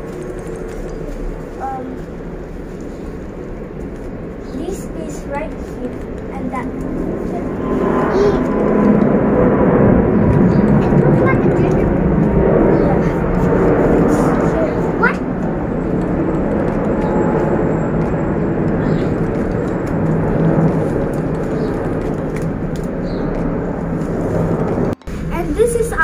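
A steady engine rumble swells about eight seconds in and slowly fades, under soft voices.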